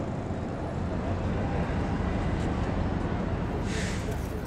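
Busy city street ambience: a steady rumble of traffic, with a short hiss near the end.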